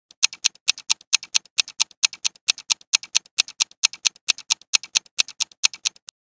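Countdown ticking sound effect: fast, even clock-like ticks, about four loud ticks a second with softer ones between, starting just after the start and cutting off at the end.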